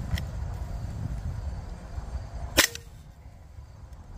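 Hatsan Invader Auto .22 PCP air rifle, unsuppressed, firing a single shot: one sharp report about two and a half seconds in. A faint click comes just before, near the start.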